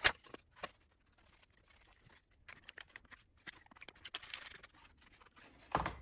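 Irwin Quick-Grip one-handed bar clamps being swung into place and tightened around a glued plywood corner: a sharp click at the start, then scattered small clicks and rattles of the clamp bars and trigger, with a louder run of clicks near the end.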